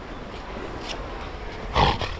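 A juvenile Cape fur seal gives one short, loud, harsh growl near the end, over a steady low background hiss.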